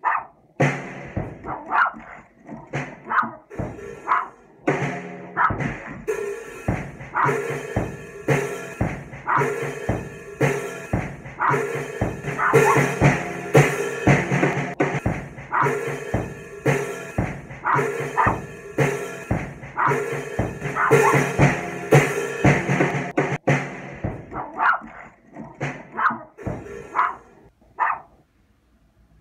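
A drum kit being played, with drums and cymbals struck in an uneven, loose rhythm and a dog barking among the hits. The playing is densest through the middle and thins to scattered hits near the end.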